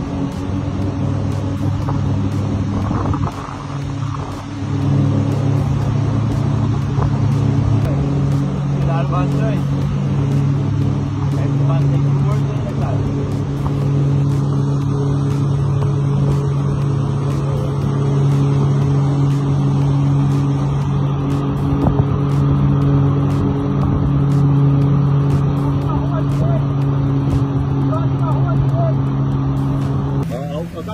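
Outboard motor of a small aluminium boat running steadily under way, dipping briefly about three seconds in, with water rushing along the hull.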